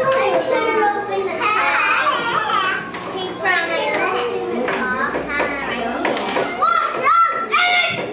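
Many young children chattering and calling out at once, their high voices overlapping into a continuous babble with no single clear speaker.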